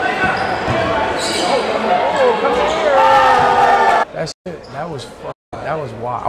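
A basketball dribbled on a gym floor during a one-on-one game, under a crowd's chatter and shouts echoing in a large hall. The sound cuts off about four seconds in.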